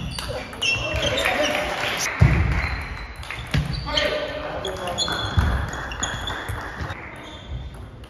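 Table tennis rally in a large sports hall: the celluloid ball clicking off bats and table in quick succession, with heavy footwork thumps and squeaks from the players' shoes on the floor. Voices sound in the hall along with the play.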